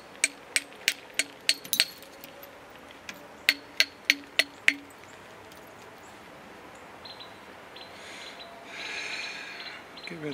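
Copper-headed bopper tapping lightly on the edge of a stone biface: about a dozen sharp clinks, roughly three a second, in two runs, the second starting about three and a half seconds in. A softer scratchy rustle follows near the end.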